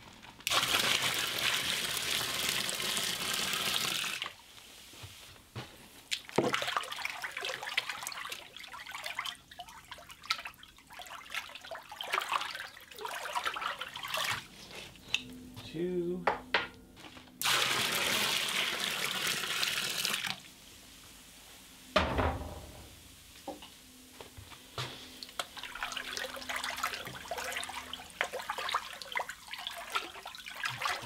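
Hot milk poured from a stainless steel stockpot into a barrel of milk: a steady splashing pour of about four seconds at the start and a second pour of about three seconds later on, with handling clicks between. A single loud thump comes after the second pour.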